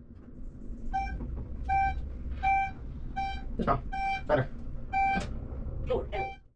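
An elevator beeping over and over, about one beep every three-quarters of a second, each beep the same single pitch. Beneath it runs a low steady rumble, and a few short sharp sounds fall between the beeps.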